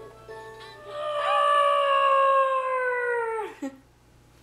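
A dog howls once: a long, held note that sags slowly in pitch and falls off at the end. A child's electronic toy plays a tune under the start of it.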